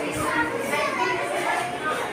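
Several children talking at once, an indistinct chatter of young voices with no single clear speaker.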